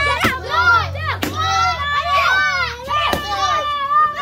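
A group of children shouting and cheering all at once, with three sharp knocks of a wooden stick striking a piñata spread through the shouting.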